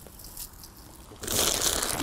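Plastic bag of chicken manure rustling and crinkling as it is picked up and handled, starting a little after a second in, after a quiet moment.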